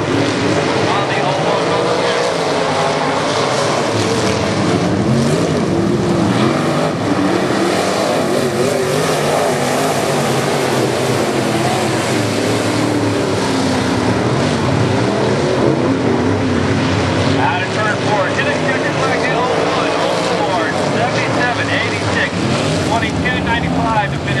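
A pack of IMCA Modified dirt-track race cars running at speed, their V8 engines continuous and rising and falling in pitch as they circle the oval.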